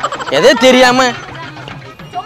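A short, loud, high-pitched cry that swoops up in pitch about a third of a second in and is held for about half a second, followed by quieter fragments.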